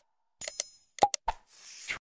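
Subscribe-button animation sound effects: a short bell-like ding, then two or three quick mouse-click pops, then a brief whoosh that cuts off suddenly.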